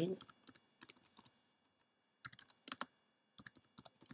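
Typing on a computer keyboard: quiet, scattered key clicks in short runs, broken by a couple of brief pauses.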